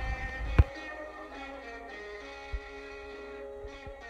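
Background music with sustained notes. A low rumble runs under it for the first half second and ends in a sharp click, after which only the music remains.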